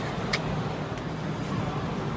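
Steady background noise of an indoor shopping mall, a low even hum and hubbub, with one short click about a third of a second in.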